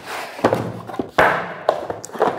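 A small cardboard box being opened and handled on a table: several dull thuds and knocks with rustling of the cardboard lid and flaps, the loudest thud a little past halfway.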